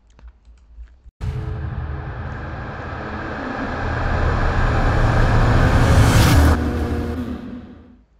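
Intro sound of a music video playing back: a low, mostly noise-like sound starts suddenly about a second in, swells to its loudest around six seconds, then fades out.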